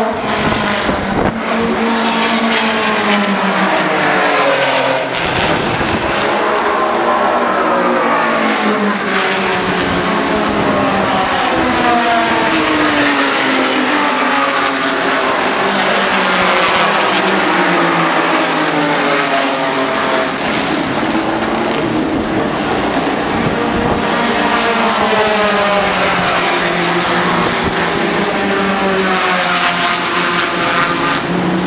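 Several pre-1961 front-engined Grand Prix cars racing past, their engines revving up and dropping back again and again as they change gear, one car's note running into the next.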